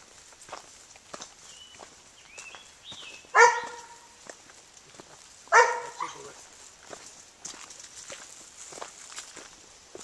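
A dog barks twice, two short loud barks about three and a half and five and a half seconds in, over footsteps and rustling through brush.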